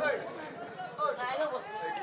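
Men's voices talking and calling out, with spectators chattering in the background.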